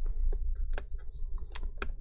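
Small sharp clicks and taps from fingers and a spudger working a laptop battery connector and its metal locking clip on the logic board, about five ticks spread irregularly through the two seconds.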